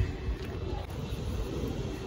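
Wind on the microphone outdoors: a low, steady rumble with no distinct events.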